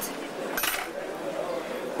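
Faint background voices and street noise, with one short clink about half a second in.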